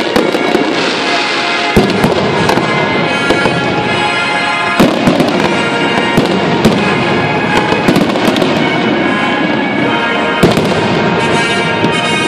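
Aerial fireworks bursting, with sharp bangs about two seconds in, a cluster around five seconds, then more near seven, eight and ten seconds. Music plays loudly and continuously underneath.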